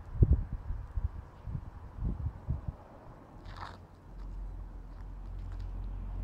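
Handling noise on a handheld camera's microphone as it is moved: irregular low thumps and crunches over the first three seconds, loudest just at the start. A steady low rumble sets in about four seconds in and slowly grows.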